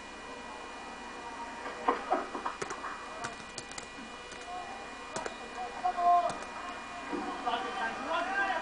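Computer keyboard keys clicking as a password is typed: about eight separate keystrokes spread over several seconds, over a steady electrical hum.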